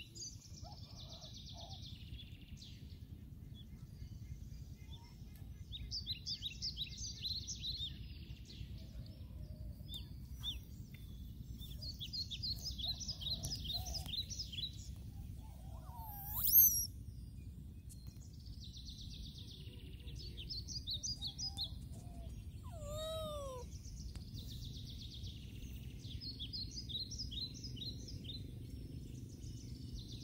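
Outdoor birdsong: a bird repeats a quick, high phrase of rapid notes every six or seven seconds, with one loud, sharp, sweeping chirp about halfway through as the loudest sound, over a steady low background rumble.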